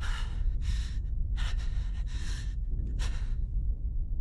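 A man breathing hard in short gasps, about five breaths, over a steady deep rumble.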